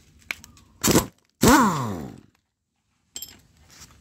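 A person's voice: a short vocal sound about a second in, then a loud groan that falls steadily in pitch and cuts off suddenly. A faint click comes near the start.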